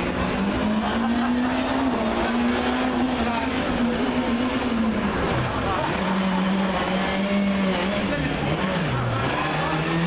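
Rally car engine running hard at high revs, its pitch holding steady, then dropping sharply twice, about halfway and near the end, as the throttle is lifted, before picking up again.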